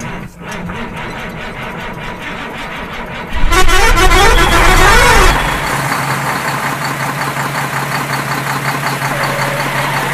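Truck engine running, with a loud horn sounding from about three and a half seconds in for nearly two seconds, its pitch wavering up and down. After the horn stops a steady engine drone carries on.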